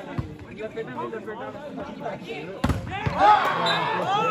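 A volleyball smacked hard once, about two and a half seconds in, over a background of many voices. The voices get louder right after the hit.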